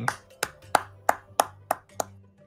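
A person clapping slowly and steadily, about three claps a second.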